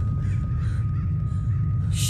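A low steady rumbling drone with a thin high tone held over it: tense soundtrack underscore and sound design.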